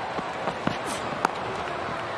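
Stadium crowd murmuring steadily at a cricket match, with a single sharp crack of bat hitting ball about a second in.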